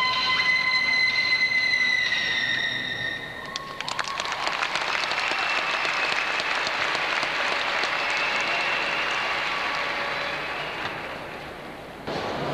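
Floor-exercise music ends on held notes, then an audience applauds from about four seconds in, the clapping dying away near the end.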